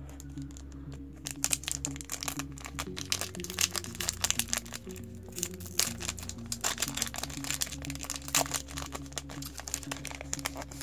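Foil trading-card booster pack wrapper crinkling and being torn open by hand, with many sharp crackles starting about a second in. Background music plays throughout.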